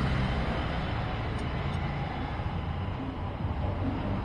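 Steady background noise with a low rumble and no distinct event.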